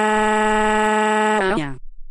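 A loud, steady buzzer-like electronic tone, one unchanging pitch rich in overtones, which sinks in pitch and dies away about three-quarters of the way through, like a machine powering down.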